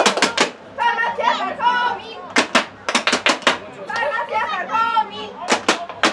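Raised, unintelligible voices broken by quick runs of sharp cracks, several in a row: at the start, around the middle and near the end.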